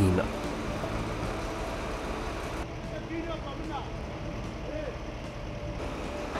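A bus engine idling steadily, a low even hum, with faint voices in the background.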